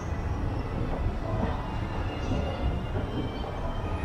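SEC escalator running: a steady low mechanical rumble from its moving steps and drive, with a faint steady high tone over it.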